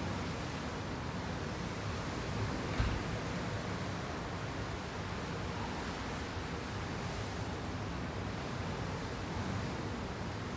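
Steady rushing noise of wind and open sea heard from a ship's deck, with a brief low bump about three seconds in.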